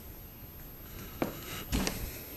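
Quiet background noise with two brief soft knocks, the first a little after a second in and the second just before the end.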